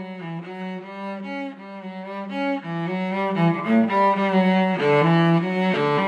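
Bowed string music: a slow melody of changing notes over a low sustained note, recorded on an iPhone.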